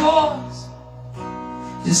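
Live solo performance of a song: a male voice finishes a sung line, then a strummed acoustic guitar chord rings on in the gap. The voice comes back in near the end.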